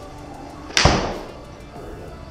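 A full golf swing striking the ball: one sharp, loud crack of club on ball about three-quarters of a second in, with a short decaying tail.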